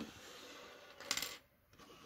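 Small hard plastic LEGO pieces (minifigures and the built snowmobile) clicking and clattering briefly against the tabletop as they are picked up and moved, a short burst of several clicks about a second in.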